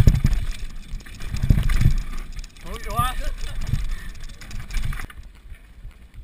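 Downhill mountain bike rattling and thudding at speed over rough dirt trail, with wind rumbling on the camera microphone. About three seconds in, a voice calls out briefly. The rumble drops off near the end.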